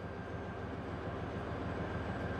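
Keiler mine-clearing tank's diesel engine running steadily, a low, evenly pulsing drone.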